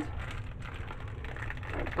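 Faint handling noise of gloved hands moving things about on a countertop, over a steady low hum.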